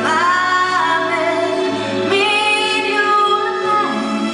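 A woman singing a ballad into a microphone with live band accompaniment. She holds two long notes, the second starting about halfway through.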